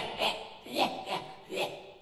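Laughter or chuckling: about five short breathy bursts that fade out near the end.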